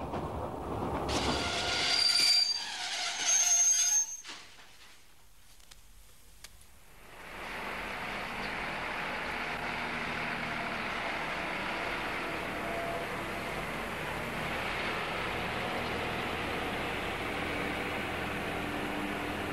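Train wheels and brakes squealing with high, steady tones for about three seconds, loudest near the start. After a short lull, a steady, even background noise runs on to the end.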